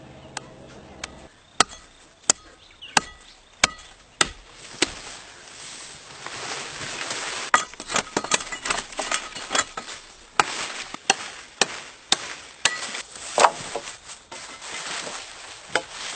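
Sharp chops of a blade cutting into paper mulberry branches: single strokes at about one and a half a second at first, then quicker and denser over a rustling, noisy stretch from about six seconds in.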